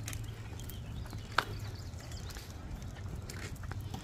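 Wagon stroller wheels rolling over asphalt, a low steady rumble with faint ticks, and one sharp click about a second and a half in.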